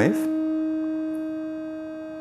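Eurorack synthesizer tone: a clipped triangle wave and a sine wave from an Intellijel Dixie VCO, mixed through a Circuit Abbey Invy attenuverter, holding one steady pitch with overtones. It fades gradually as the sine is inverted and subtracted from the triangle.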